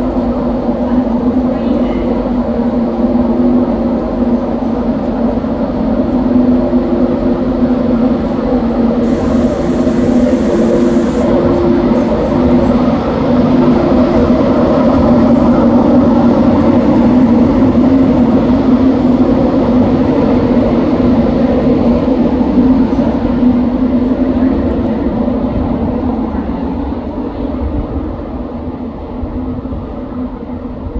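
LNER Class 91 electric locomotive running with a steady loud drone and hum, its cooling fans and electrics giving a couple of steady tones. The drone swells towards the middle and fades over the last few seconds.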